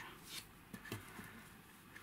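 Faint handling sounds of a velvet-covered ring box against a wooden jewellery box: a soft rustle and a few light taps in the first second, then very quiet.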